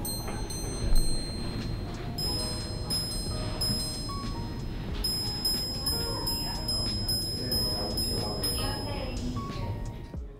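Audemars Piguet Royal Oak minute repeater in a titanium case with an open caseback, its gongs chiming a series of high, ringing strikes that stop about nine seconds in, with a short pause around four seconds in. The repeater has been set off by its slide without the time being set, so the strikes do not tell the true time.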